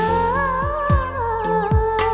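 Dramatic background music score: a long, wavering vocal melody held over a beat of deep drum hits that drop in pitch, three of them in two seconds.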